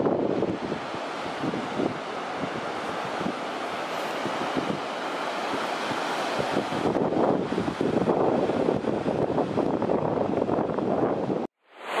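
Surf breaking on the beach, with wind buffeting the microphone: a steady rush that swells and eases, then cuts off abruptly near the end.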